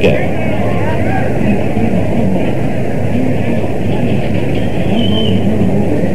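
Steady hubbub of a large cricket crowd, heard through a narrow-band, old radio broadcast recording with faint voices mixed in.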